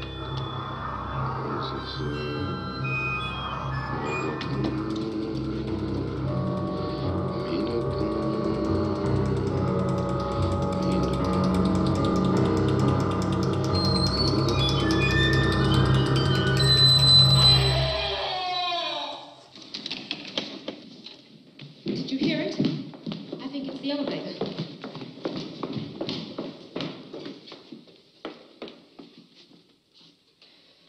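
Horror film score: held tones over a low drone, swelling to a peak and cutting off suddenly about eighteen seconds in. After it come uneven voice sounds and knocks.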